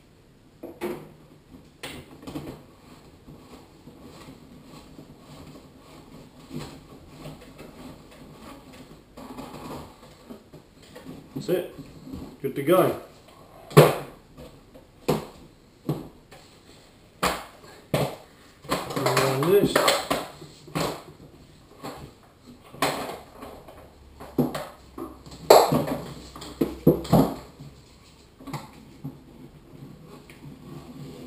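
Plastic clicks and knocks as the filled paint cup of an Earlex HV3500 spray gun is fitted and the gun is handled and set down on its cardboard box.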